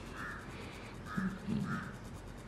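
Three short, faint bird calls, spaced about half a second to a second apart.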